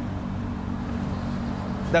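A steady low mechanical hum with several even tones, over a faint wash of outdoor noise.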